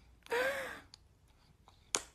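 A baby gives one short, breathy, sigh-like vocalization about a quarter second in, its pitch rising a little and falling away. A single sharp click comes near the end.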